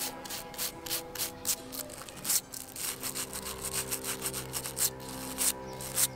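Short scraping strokes of a hand-held bonsai tool over moss-covered soil in a bonsai pot, about three strokes a second, a little uneven.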